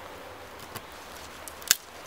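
A flat-ground carbon-steel knife (TLIM C578) whittling a thin green stick: a faint click about three quarters of a second in, then one sharp crack near the end as the blade cuts into the wood.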